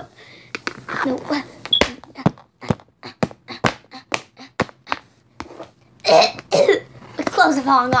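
A run of quick, irregular sharp clicks and taps, then two loud coughs about six seconds in. A child's voice starts near the end.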